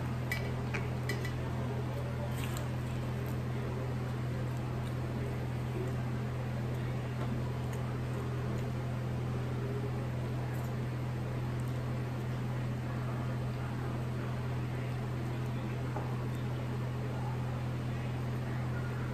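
Steady low machine hum with a faint hiss, as of a fan running in a small room. A few faint clicks in the first couple of seconds come from biting into and chewing a burger.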